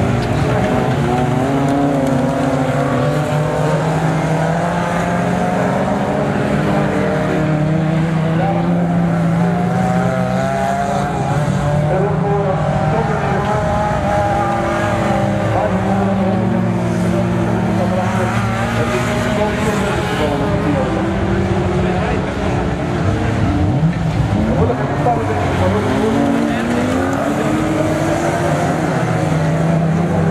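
Engines of several autocross race cars running hard on a dirt track, their pitch rising and falling as they rev and ease off through the bends.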